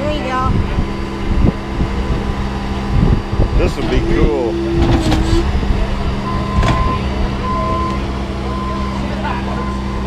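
Compact track loader's diesel engine running steadily while it works the dock section. In the second half a reversing beeper sounds in short, regular beeps as the machine backs away.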